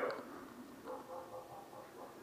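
A faint, indistinct person's voice: a short sound right at the start and a brief murmur about a second in.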